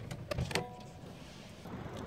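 Car door being opened from inside: two sharp clicks, then a short steady tone, then a low hum.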